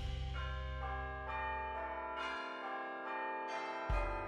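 Background music of bell-like chimes, several ringing notes entering one after another over a low drone that fades out about halfway through.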